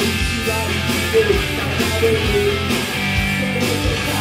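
Live rock music: an electric guitar played over a programmed backing track with a steady drum beat and bass.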